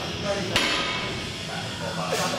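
Loaded barbell clanking once, sharply, about half a second in as it is pulled up in a deadlift.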